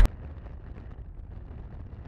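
Steady low wind rumble on the microphone and road noise from a moving car, with no distinct events.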